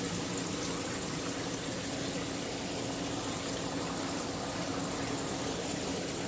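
Saltwater aquarium system running: a steady rush of circulating water with a faint low hum from its pumps.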